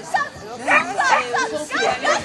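High-pitched human voices, calling and chattering in short bursts.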